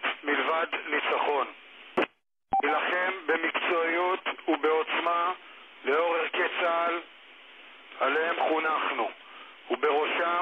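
Speech only: a military commander's subtitled statement in a language other than Romanian. It sounds thin and radio-like, with a brief dropout about two seconds in.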